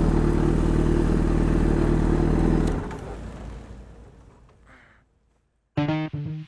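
A 2006 Yamaha FZ6's 600cc inline-four idling steadily through an aftermarket SP Engineering dual carbon exhaust. The engine sound fades out about three seconds in, and upbeat music starts near the end.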